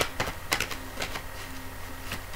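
Oracle cards being shuffled by hand: irregular sharp clicks and slaps of card stock, the loudest right at the start.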